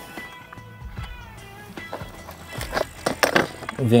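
Light clicks and knocks of fishing tackle being handled while a pellet hook bait is put on, loudest about three seconds in, over faint music-like tones.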